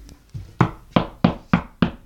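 A quick series of about five sharp knocks, roughly three a second.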